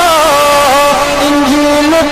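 A man's voice singing a naat, holding one long drawn-out note into a microphone. The pitch slides down a step shortly after the start, then holds with gentle wavers.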